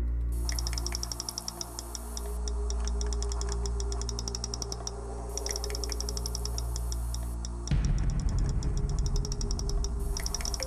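Hydrophone recording of a rapid, regular train of sharp underwater clicks, which the researcher takes for echolocation by an unknown animal in the lake. The clicks run over a low music drone, and about eight seconds in the recording gets louder, with a rough low crackle added.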